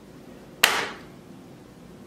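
A single short, sharp puff of breath, a burst of air noise a little after the start that dies away within half a second.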